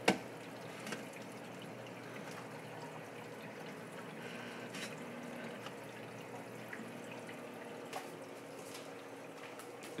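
Water trickling and dripping in a reef aquarium sump over a steady hum from a Nyos Quantum 120 protein skimmer, whose collection cup is making noise. A sharp knock right at the start as the cup is handled, and a couple of small clicks later.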